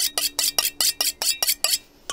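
Knife being honed on a sharpening steel: quick, even scraping strokes of the blade along the rod, about five a second, over a faint ringing of the steel. The strokes stop shortly before the end.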